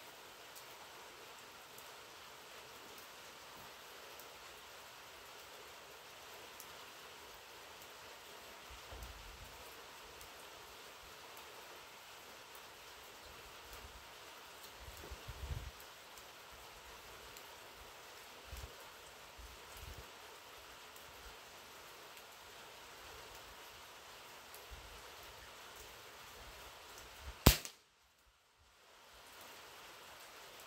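Steady rain hissing, with a few faint low thumps; about 27 seconds in, a single sharp crack of a pellet rifle shot, the loudest sound, after which the sound cuts out for about a second.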